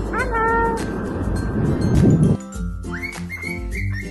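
A sulphur-crested cockatoo gives one short call just after the start, rising and then holding its pitch, over background music with a steady beat. Later the music carries on with a few short rising whistles near the end.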